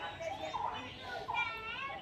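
Children's voices talking and calling out, with a high, wavering voice near the end.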